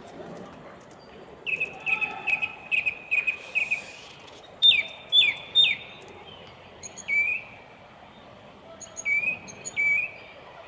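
A small bird chirping: a quick run of repeated high notes, then three loud, sharp downward-sliding calls, then a few scattered chirps near the end.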